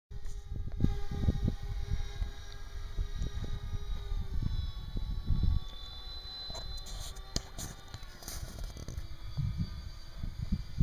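Motors of a radio-control model Canadair water-tanker plane running in flight, heard as a thin steady whine that shifts pitch slightly about halfway through, under heavy wind buffeting on the microphone.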